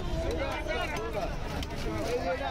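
People talking, with voices overlapping, over a steady low background rumble.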